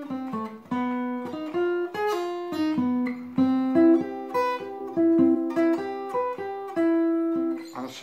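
Steel-string acoustic guitar playing a single-note arpeggio line, each note picked separately and ringing briefly into the next at an even, unhurried pace.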